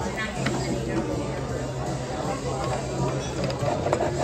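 Busy restaurant dining room: a steady low hum under indistinct chatter, with the clink and clatter of plates and cutlery. A knife starts cutting into a bread loaf near the end.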